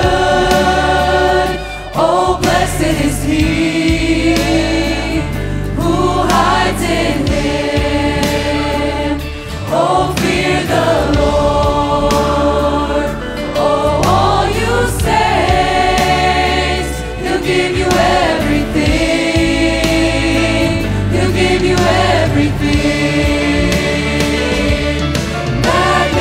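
Church youth choir singing a worship song in several parts with instrumental accompaniment. Long held notes with vibrato run over a steady bass, with short breaks between phrases.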